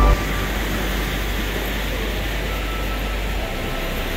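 Steady rushing of waterfalls and river water, an even hiss with no breaks. A music track cuts off just as it begins.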